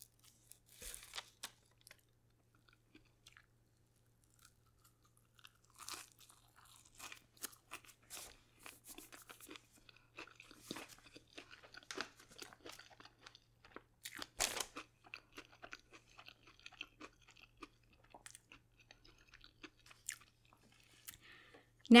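Close-miked, soft chewing of a piece of fried funnel cake: quiet, scattered bites and mouth sounds with a light crunch, a little louder about fourteen seconds in.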